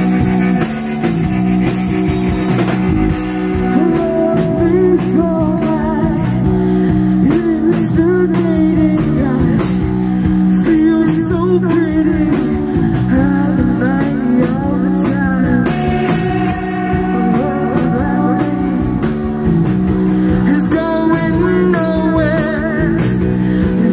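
Live rock band playing: drum kit, bass, guitars and synth in a steady groove, with a wavering melodic line rising above them from about four seconds in.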